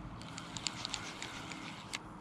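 A scatter of light, irregular clicks and ticks close to the microphone over a low rumble of wind.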